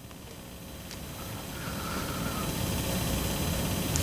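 Low, rumbling background noise that swells steadily louder over a few seconds, with a faint wavering tone partway through.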